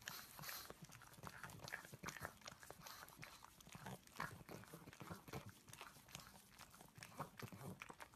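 Pug licking a lollipop-style chew treat on a stick: a faint, irregular run of small licking clicks, several a second.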